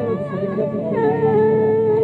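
Old Pashto folk song: a sung vocal line with accompaniment that wavers in pitch, then settles into one long held note about halfway through.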